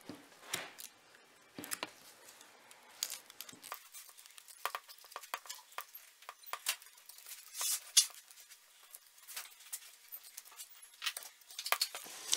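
Knife blade cutting and scraping hide and tissue away from a deer's skull around the antler base: a run of quiet, irregular small clicks and scrapes.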